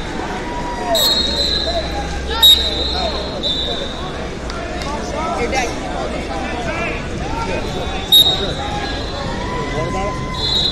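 Wrestling-hall ambience: wrestling shoes squeaking on the mats throughout, over general crowd chatter. Trilling referee whistle blasts start about a second in, at about two and a half seconds and again near eight seconds.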